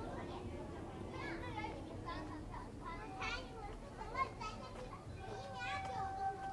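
Children playing, with scattered high-pitched shouts and calls.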